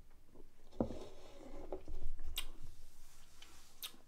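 Quiet mouth sounds of beer being tasted and swallowed, with a few sharp clicks; the last click, near the end, is a pint glass being set down on a table.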